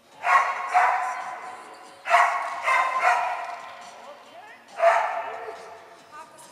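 A dog barking repeatedly while running an agility course, in three bursts of one to three barks each, echoing in a large indoor hall.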